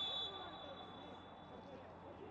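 Referee's whistle blown in one long steady blast that fades out near the end, the signal that the goal is ruled out after the assistant's flag. Faint stadium background underneath.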